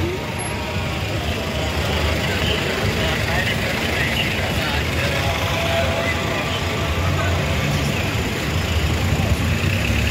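Steady road traffic noise from cars passing on a street, a continuous low rumble with indistinct background voices.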